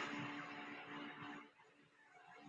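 Quiet room tone with a faint steady hum, as the last of a voice fades out in the first second or so.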